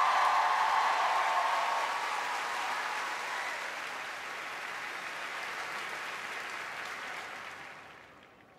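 Studio audience applauding, loudest at first, then dying away and ending near the end.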